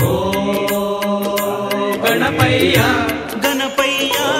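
Devotional song to Ganesha with a steady percussion beat: a long held melodic note, then a wavering, ornamented melodic line about halfway through.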